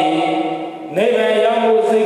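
A Buddhist monk chanting in long, held notes. The voice dips away briefly before the middle and comes back with a rising pitch.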